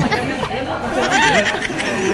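Several voices talking over one another at once, indistinct chatter with no clear words.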